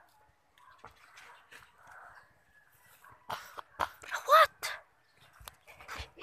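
Sandal footsteps and scuffs on concrete, with sharp clicks. A little past four seconds in comes one short, high yelp that rises and falls; it may be a child or a dog.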